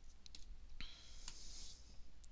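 A few faint, scattered clicks from taps on a tablet screen, over a low steady hum.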